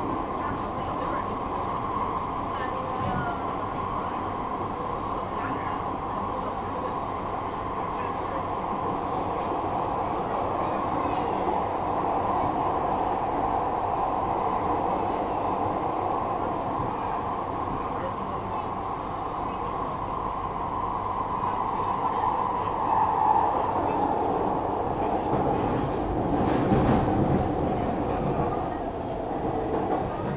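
Singapore MRT train heard from inside the carriage while it runs: a steady rumble of wheels and motors with a constant whine. It grows louder in the last third, with a heavier rumble and clatter near the end as it comes into the station.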